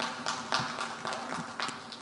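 Scattered hand clapping from a few people: irregular sharp claps, several a second, over a steady low hum.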